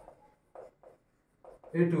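Chalk writing on a blackboard: four short strokes spaced through the first second and a half. A man's voice comes in near the end.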